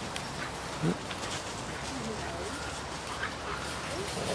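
A dog vocalising: a short, loud bark about a second in, then softer whining calls around the middle.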